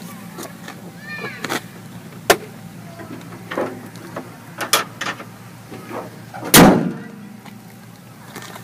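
A car bonnet is slammed shut about six and a half seconds in, the loudest sound here, after several lighter clicks and knocks. A steady low hum runs underneath.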